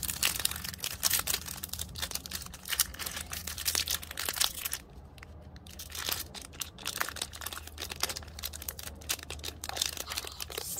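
Foil wrapper of a Pokémon card booster pack crinkling and being torn open by hand, in irregular crackles and rustles with a brief lull about halfway through.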